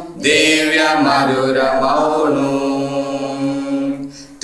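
A mixed group of men and women singing a Telugu Christian worship song together. After a short breath at the start, they sing one phrase that ends on a long held note.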